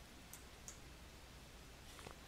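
Near silence with two faint, short clicks close together early on, from a computer mouse button.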